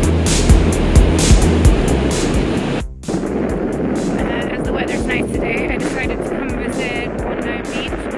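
Background music with a steady beat that cuts off abruptly about three seconds in. After the cut comes a steady rush of wind buffeting the microphone, with a voice partly heard under it.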